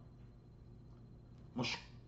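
A pause with only faint room tone, then about one and a half seconds in a short, sharp, breathy sound from a man as he starts to speak again.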